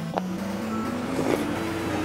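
Background music with slow held notes stepping upward in pitch, over a few soft sips as red miso soup is drunk from a bowl.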